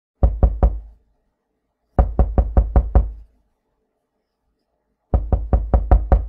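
Rapid knocking, about five knocks a second: a run of three, then six, then another run starting near the end, with dead silence between the runs.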